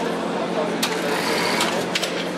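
Tracked robot chair's drive running as it moves across the floor on its rubber caterpillar tracks, with a few sharp clicks, under the chatter of voices nearby.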